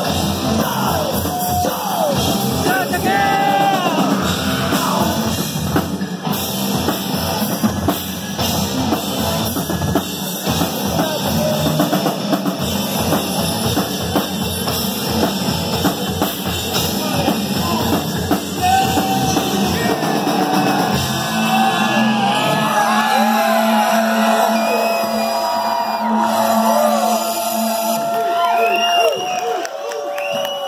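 Live rock band playing loudly, drum kit and guitars with shouted vocals. About twenty seconds in the drums and bass drop out and the song winds down on held notes with yells.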